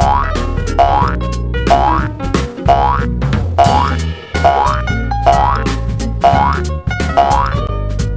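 Cartoon boing sound effects, a short rising glide repeated about once a second, over upbeat background music with a steady beat.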